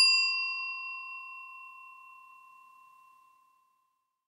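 A bell-like 'ding' sound effect of the kind used in subscribe outros. It is struck right at the start and rings with several clear high tones, fading away over about three seconds.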